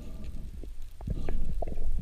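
Muffled underwater sound through a GoPro housing: a low rumble of water moving against the camera, with a string of short soft knocks and clicks that grow louder from about a second in.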